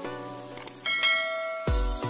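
Subscribe-animation sound effects over music: two short clicks about half a second in, then a ringing bell chime. An electronic dance beat with a heavy bass kick comes in near the end.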